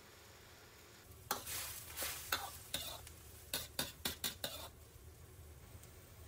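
A metal ladle stirring boiling soup in a wok. After a quiet first second it scrapes and clinks against the pan about ten times in quick, uneven strokes.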